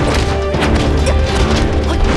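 Dramatic background music with a steady low bass, cut through by several sharp hits and swishes: the staged blows of a fight scene.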